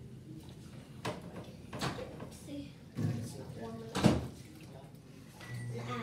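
Refrigerator door being opened and shut: a few knocks, with the loudest thump about four seconds in.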